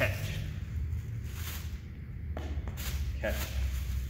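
A plastic bag rustling in short crinkly bursts as it is handled, tossed and caught, with shuffles of feet on a gym floor, over a low steady hum.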